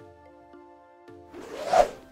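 Soft music with held, chime-like tones. About a second and a half in, a short whoosh sound effect builds up and cuts off just before the end, the loudest thing here.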